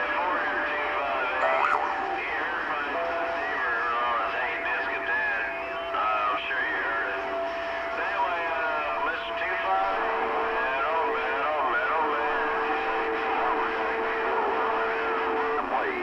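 CB radio receiver playing a crowded channel: several thin, distorted voices talk over one another, with steady whistling tones from overlapping carriers that shift pitch a few times. It cuts off at the end.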